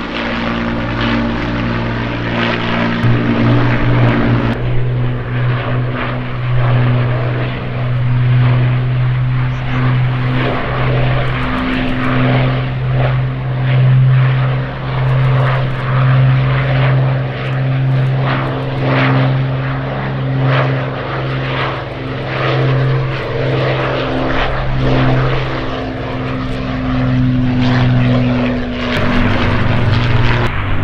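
Avro Lancaster's four Rolls-Royce Merlin V12 engines droning steadily in a flypast, the loudness rising and falling every couple of seconds.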